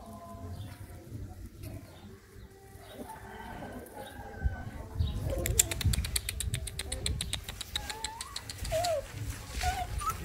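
Puppies play-fighting on gravel: scuffling and scratching that becomes busier about halfway through, with a few short, high squeaky yelps near the end.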